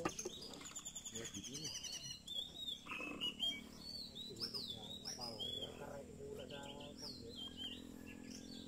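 Several birds chirping and calling, with a quick falling run of high chirps near the start and scattered short calls after it.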